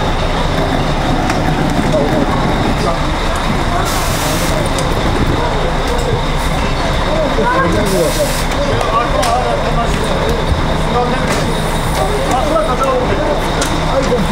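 A parked coach's engine running at idle, a steady low hum, under several people's overlapping chatter.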